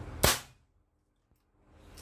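A single shot from a Bengal X-Trabig tactical bullpup PCP air rifle: one sharp, loud crack about a quarter of a second in, dying away within half a second.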